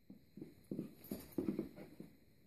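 A mini Australian shepherd puppy and a tabby cat play-fighting on carpet: a quick run of short low grunts and scuffles, about three or four a second, loudest midway.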